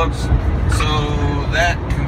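Steady low rumble of engine and road noise inside a semi truck's cab at highway speed, with brief fragments of a man's voice.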